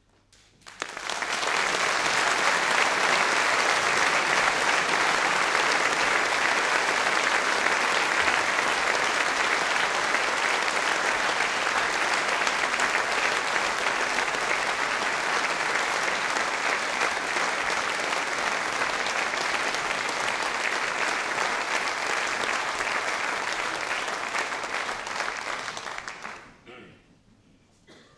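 Audience applauding after an opera singer's number: the applause breaks out about a second in, holds steady and dies away at the very end.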